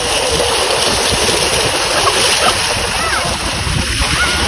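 Water gushing out of a corrugated irrigation pipe into a shallow field channel, rushing and splashing steadily around the bodies of people sitting in it.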